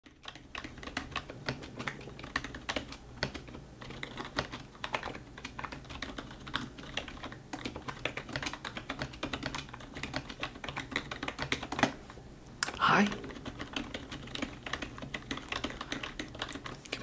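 Typing on a computer keyboard: an irregular run of light keystroke clicks while an email is being written. About thirteen seconds in comes a brief voiced sound that rises in pitch, louder than the keys.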